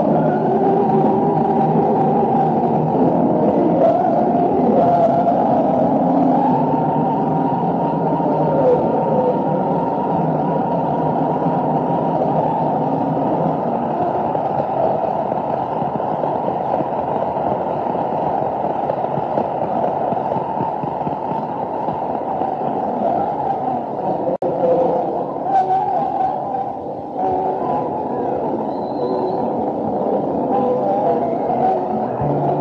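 Muffled, low-fidelity audience recording of a live concert in an arena: a loud, dense wash of band and crowd sound with wavering tones, dull as if the treble were cut off.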